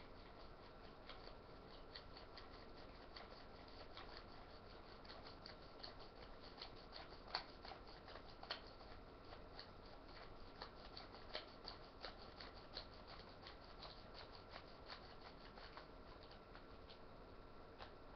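Plastic ratcheting film developing reel being twisted back and forth to wind 35mm film onto its spiral: a faint, irregular run of small clicks, a few louder ones midway.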